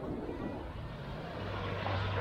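A distant engine drones as a steady low hum, growing stronger about halfway through, over an even wash of beach ambience and wind on the microphone.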